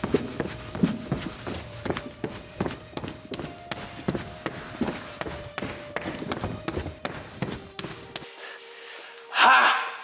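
Quick, irregular footsteps, as of people running, over a faint steady musical tone. Near the end the steps stop, the tone holds alone, and a short loud vocal burst follows.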